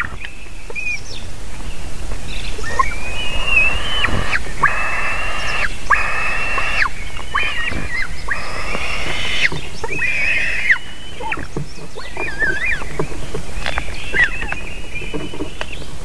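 White-tailed eagle chicks giving high, thin begging calls while being fed. The calls are a series of drawn-out squeals, about a second each, with shorter calls in between.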